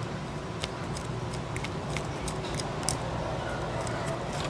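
Small, irregular clicks and fingertip scraping from turning the threaded screw-down lock of a stainless-steel watch's chronograph pusher by hand, over a steady background noise.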